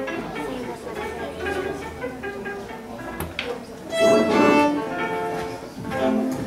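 Folk-band fiddle playing short, broken bowed phrases, with a louder passage about four seconds in.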